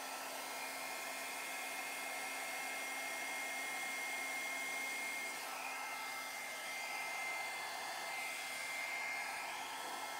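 Handheld hair dryer with a concentrator nozzle running steadily: an even rush of air with a steady high whine from its motor, blowing thinned pour paint across a wood round.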